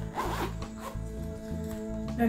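Backpack zipper being pulled, a short rasping run in the first half second.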